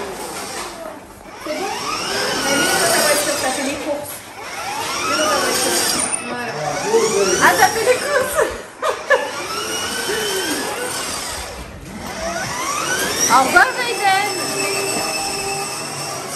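Electric motor of a child's battery-powered ride-on toy car whining as it drives, its pitch rising and falling in repeated sweeps as it speeds up and slows, with voices in the background.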